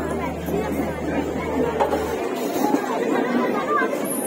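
Many people talking at once, voices overlapping, with a steady low hum that cuts off about two seconds in.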